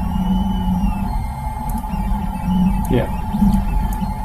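Tronxy 3D printer running mid-print: a steady low hum with a thin whine that rises and then falls in pitch over about the first second, as its stepper motors speed up and slow down.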